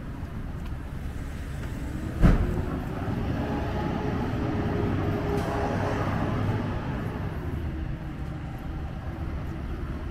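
Street traffic: steady road noise of cars, with a vehicle passing whose engine hum swells over the middle seconds and fades. A single sharp thump about two seconds in.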